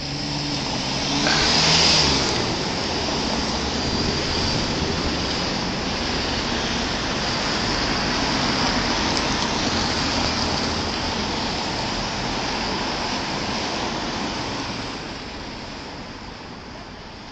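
Cars driving through an intersection close by: engine and tyre noise that swells to its loudest about two seconds in, holds fairly steady, then fades near the end.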